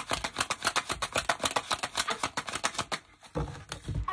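A tarot deck being shuffled by hand: a fast, even run of card slaps, about ten a second, that stops about three seconds in. A couple of thumps from the deck being handled follow.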